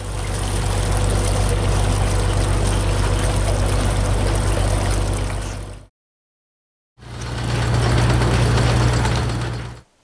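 Truck-mounted well-drilling rig's engine running steadily, with water gushing from a hose into the steel portable mud pit. The sound stops for about a second just past the middle, then the rig's engine runs again with a stronger low hum.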